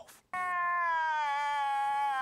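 A comedy sound effect of a long, high-pitched wailing cry: one drawn-out note that begins just after the start and sinks slowly in pitch.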